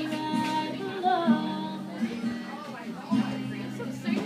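A woman singing live over her own strummed acoustic guitar.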